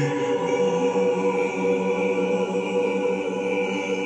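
Church choir singing, holding long steady chords.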